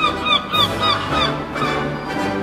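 Birds giving a quick run of short calls, each dropping in pitch, for about the first second, over orchestral music.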